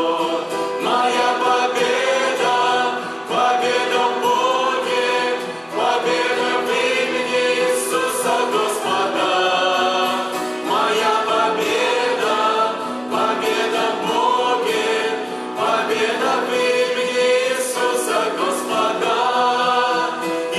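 A mixed vocal group of two women and two men singing a Russian-language worship song together into microphones, in phrases of a few seconds each.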